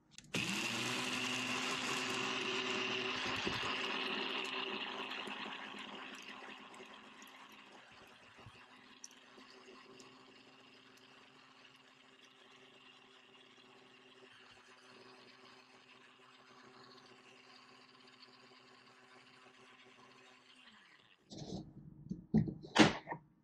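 NutriBullet blender with a grain-milling blade grinding baked eggshells into a fine powder. A loud grinding noise over a steady motor hum lasts the first four seconds or so, then dies down over a few seconds to a much quieter, even hum as the shells are reduced to powder. The motor cuts off about a second before the end, followed by a few short knocks.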